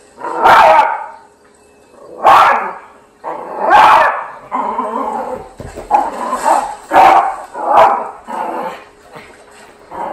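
Yorkshire terrier barking at an elephant on a TV, a series of loud separate barks every second or so, with a rougher stretch near the middle.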